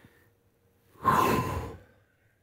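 A man's forceful breath out, one loud breathy sigh lasting under a second, beginning about a second in as the arms are dropped and the body folds forward in a stretch.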